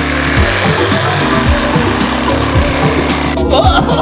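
Cordless reciprocating saw running as its blade cuts into the spiky husk of a durian, cutting off about three seconds in, with background music with a steady beat underneath throughout.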